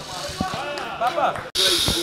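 Voices over a stage sound system with a few dull low thumps, and a loud burst of high hiss starting about one and a half seconds in.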